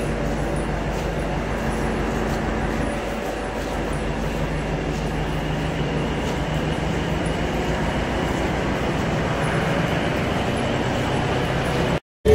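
Steady low hum and rumble of a train, holding an even level with no sudden events.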